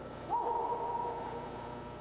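A person's drawn-out call: a voice swoops up about a third of a second in and holds one high note for about a second before fading.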